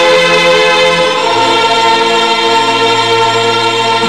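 Film soundtrack music: a choir singing long held chords, the chord shifting about a second in.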